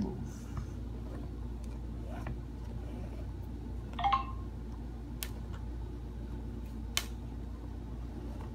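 Flat shoelaces being pulled loose from a sneaker's eyelets: sparse handling clicks and a brief squeak about four seconds in, over a steady low hum.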